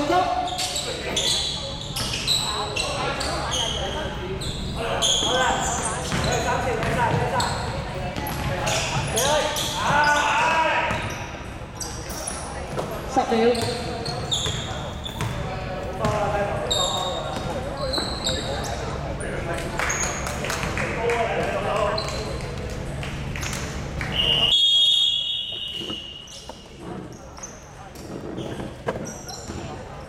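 Basketball game play: a ball bouncing on a hardwood court amid players' and spectators' shouts. About 25 seconds in, a scoreboard buzzer sounds a steady high tone for about a second and a half, the signal that time has run out.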